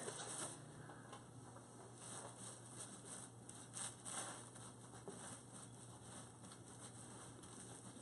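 Faint sawing of a knife through a sponge cake layer, with the crinkle of the plastic wrap it sits on, in soft irregular scrapes and rustles.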